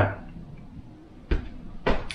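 Small wooden airbrush holder set down on a wooden workbench: a single dull knock about a second and a half in, then a second brief knock near the end.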